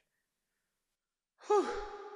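A man's exasperated sigh, starting about a second and a half in after dead silence: a voiced, breathy exhale that falls in pitch at first, then trails off.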